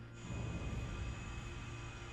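Suspenseful film score: a low, rumbling drone swells in a moment in, under a thin steady high tone.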